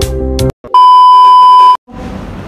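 Background music cuts off about half a second in. A loud, steady, high-pitched beep tone, edited into the soundtrack, then sounds for about a second and stops abruptly.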